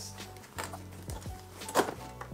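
Background music with a few light knocks and clatters of supplies being set down on a desk, the loudest just before the end.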